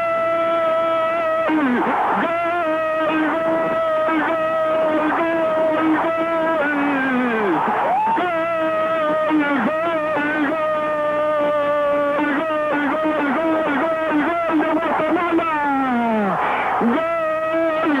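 A male football commentator's drawn-out, repeated goal cry of "gol", each breath held on one high pitch for several seconds and ending in a falling slide. The slides come about 2 s in, around 8 s and near 16.5 s.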